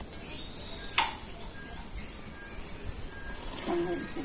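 Insects chirring in a steady, high-pitched chorus, with one sharp click about a second in.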